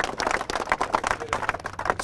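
A small crowd applauding, many hands clapping unevenly.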